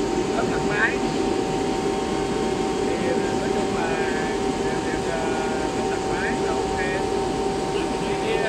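Steady industrial machinery drone with a constant humming tone, with a man's voice speaking in short stretches over it.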